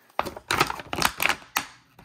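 Rigid clear plastic packaging crackling and clicking as hands flex and pull it apart, a quick run of sharp clicks that stops about a second and a half in.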